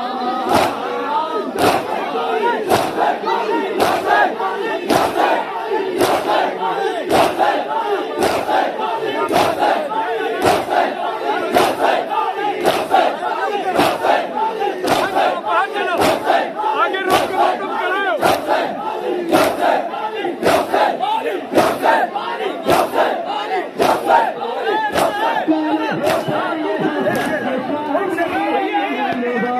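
A crowd of mourners doing matam: many hands striking bare chests in unison, about once a second, under many men's voices chanting and shouting together.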